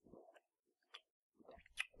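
Near silence with faint mouth noises and a few small clicks, leading into a man's voice.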